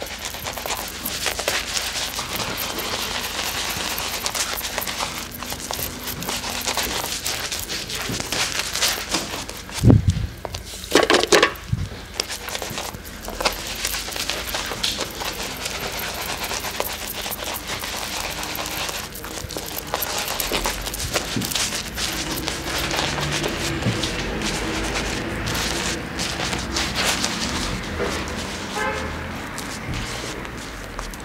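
Shaving-soap lather being rubbed and massaged into a beard by hand, a continuous wet squishing and crackling of foam. About ten and eleven and a half seconds in, two louder knocks stand out.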